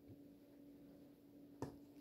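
Near silence over a faint steady hum, broken by one short sharp click or tap a little past one and a half seconds in.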